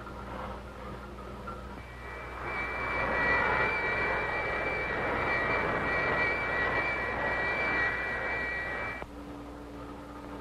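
Jet-like film sound effect: a loud rushing noise with a steady high whine that swells up about two seconds in and cuts off abruptly near the end.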